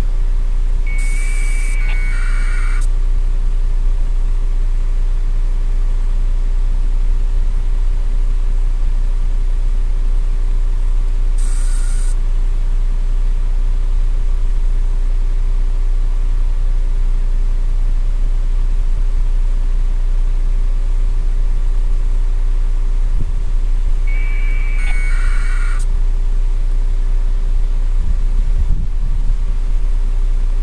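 A steady low rumble with a constant hum, like an engine idling, running throughout. Three short, high bursts of hiss with beeping tones cut in: about a second in, about a third of the way through, and again late on.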